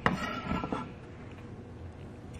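A single sharp knock right at the start, then a brief soft rustle of food pieces in a glass bowl of chopped salsa vegetables, then quiet kitchen room tone.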